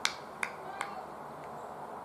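Three sharp hand claps in quick succession, about 0.4 s apart, in the first second, over steady outdoor background.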